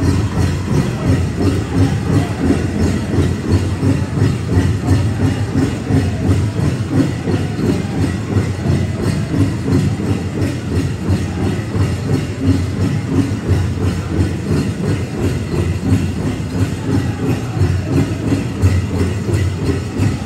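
Powwow big drum struck in a steady beat by a drum group, with the singers' voices over it.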